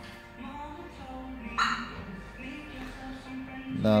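Clifford 330X van alarm siren giving a single short chirp about one and a half seconds in, the signal that the alarm has armed as the van is locked.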